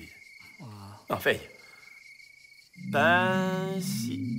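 Crickets chirping steadily in the background. About a second in there is a short murmur of a man's voice. From about three seconds in, a man's long drawn-out voice comes in over a low wavering tone.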